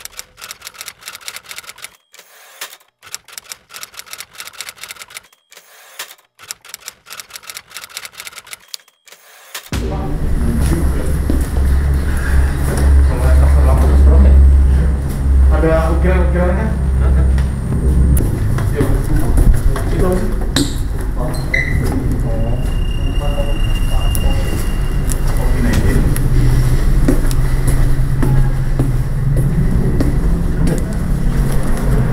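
Typewriter key clicks come in quick runs with short gaps for about the first ten seconds, a typing sound effect. They cut off abruptly into a loud low rumble of room and handling noise with voices. A brief steady high beep sounds a little past the middle.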